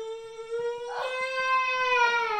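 A baby's long, drawn-out cry held on one steady pitch that rises slightly.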